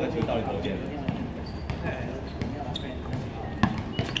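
A basketball bouncing on an outdoor hard court: several separate thuds, the loudest a little before the end, with players' voices faint underneath.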